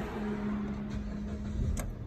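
2012 Dodge Avenger being started with a freshly programmed key: a steady whir for about a second and a half under a low rumble, a sharp click near the end, then the engine catching and running. The start shows the new key is accepted by the immobilizer.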